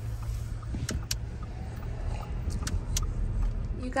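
Steady low rumble of a running car heard from inside the cabin, with a few light clicks.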